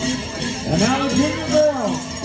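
Bells on pow wow dancers' regalia jingling with their steps, over music from the drum and singers.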